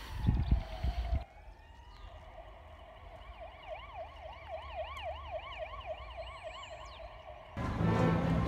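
A faint emergency-vehicle siren that glides up in a wail, then switches to a fast yelp of about two to three swoops a second. There is a low rumble in the first second, and loud music comes in just before the end.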